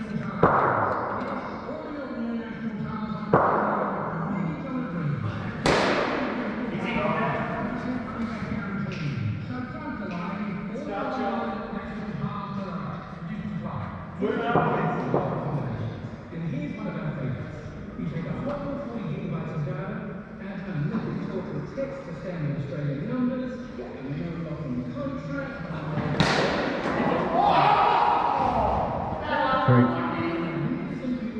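An indoor cricket game with a handful of sharp knocks, several seconds apart: a cricket ball struck by the bat and hitting the netting and hall boundaries, each ringing on in the large hall. Players' voices carry between the knocks.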